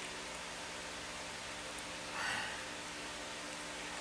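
A steady low hiss and faint hum, with one soft scrape a little past two seconds in, as a wire loop tool is pulled through oil-based modelling clay.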